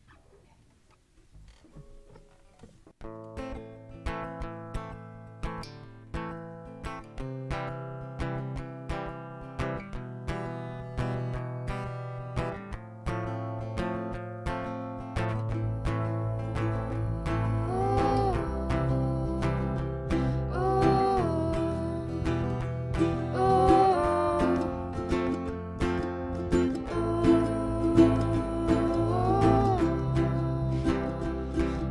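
Song intro on acoustic guitar: a few quiet notes, then steady strumming from about three seconds in, with a low bass joining about halfway and a wavering melody line entering later.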